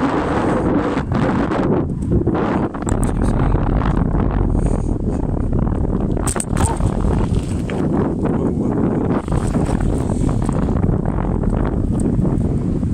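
Loud, steady wind buffeting a handheld phone's microphone from riding a bicycle.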